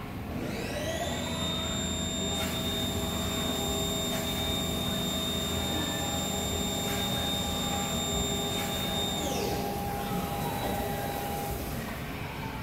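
A high-pressure wash system whining as its motor spins up about half a second in, holding a steady high pitch, then winding down near the end, with water spray hissing against the glass, heard from behind the window.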